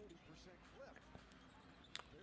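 Faint basketball game broadcast at very low volume: a commentator's voice with a ball bouncing on the hardwood court, the sharpest knock just before the end.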